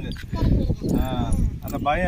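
Voices talking, with wind rumbling on the microphone.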